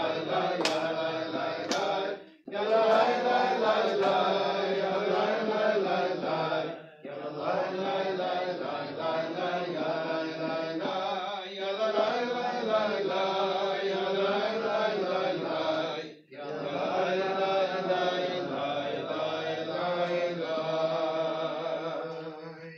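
Voices chanting a Hebrew prayer to a melody, in long sung phrases broken by brief pauses about two, seven and sixteen seconds in.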